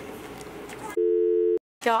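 A telephone tone, two low notes held steady together, starts suddenly about a second in, lasts about half a second and cuts off abruptly. Before it, a faint steady background hum with light rustling.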